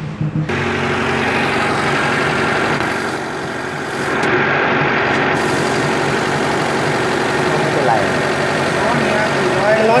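Engine idling steadily, heard close up in the engine bay with the radiator filler neck open. The check is for coolant being pushed out, which the mechanics link to a leaking cylinder head.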